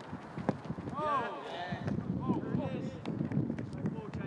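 Footballers shouting to each other during a passing drill on a grass training pitch, with sharp thuds of footballs being kicked.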